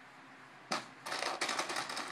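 Lego bricks clattering as a hand rummages through a plastic bin of pieces, a dense run of small plastic clicks and rattles starting about a third of the way in.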